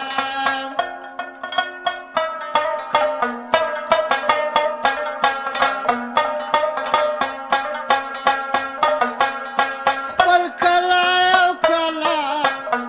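Afghan rabab played in quick plucked runs over a sustained lower note, an instrumental stretch of a Pashto folk song. A wavering held tone comes in near the end.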